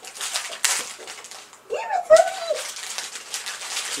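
Crinkling and rustling of a Pocky snack wrapper being handled and pulled open, with a short vocal sound about two seconds in.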